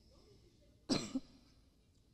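A short cough about a second in, followed at once by a smaller second cough, loud at the microphone.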